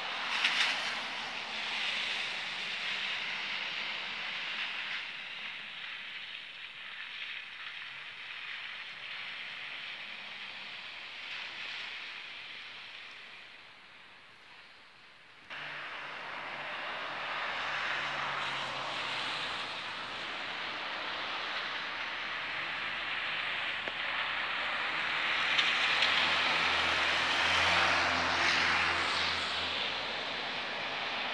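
Road traffic passing on a wet road: tyres hiss on the wet asphalt, swelling and fading as cars go by. About halfway the sound drops away, then returns suddenly at full level, and it is loudest near the end, where a vehicle's engine hum comes through.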